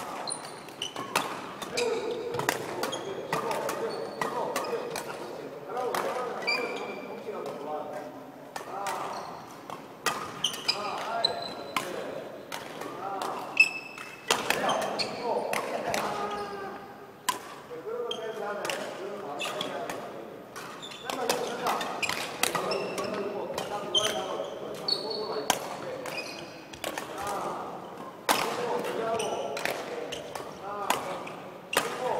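Badminton rackets striking shuttlecocks in quick, uneven succession, about one to three sharp hits a second, echoing in a large hall. Short high squeaks of sneakers on the wooden court floor come between the hits.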